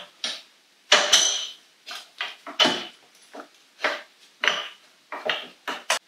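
Irregular metal clinks and knocks as a brake caliper, its mounting plate and spacers are worked onto a motorcycle's rear axle: about ten separate strikes, some with a brief metallic ring.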